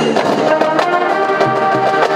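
Marching band playing: brass section sounding sustained chords over the drumline's steady strikes.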